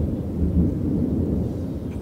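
A loud, low rumble with no pitch, heavy in the bass, running through a pause in the speech.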